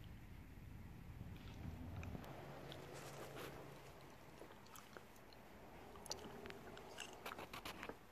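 Near-quiet room tone with faint scattered clicks and light rustling, the clicks bunching together near the end.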